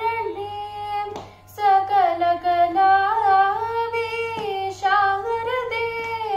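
A young girl singing a Carnatic composition in raga Kalyani: long held notes bent with gamaka ornaments, broken by a brief pause for breath about a second in.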